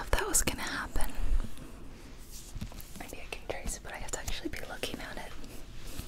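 A soft whisper, then fingernails tapping and scratching on the cover of a hardcover book held close to the microphone, a string of light irregular taps.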